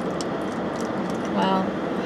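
Steady hum of a car's cabin with the air conditioning running, and a brief vocal sound from one of the people about one and a half seconds in.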